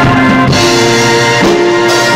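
Recorded rock song with held, sustained chords, a live drum kit played along over it: a cymbal crash about a quarter of the way in and a drum hit near the end.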